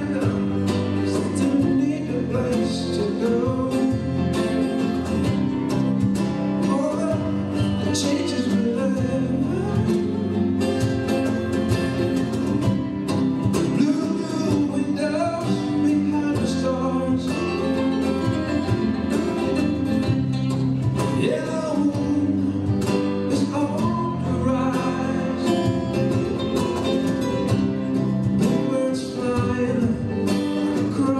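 Live acoustic band playing a song without a break: acoustic and classical guitars over bass guitar and cajon.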